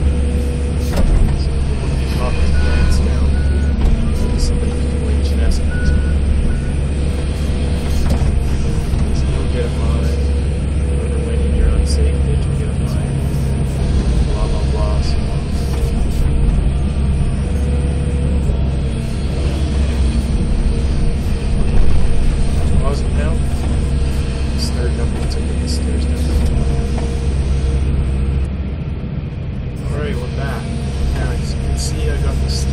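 Tracked excavator's diesel engine running steadily, heard from inside the cab, with scattered knocks as the bucket digs and dumps soil and rock.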